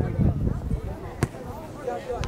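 A soccer ball kicked once, a single sharp thud about a second in, over background voices.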